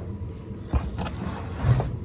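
Handling noise on a wooden workbench as the chainsaw and its removed carburetor are moved about: a couple of light clicks about a second in and a low thump near the end.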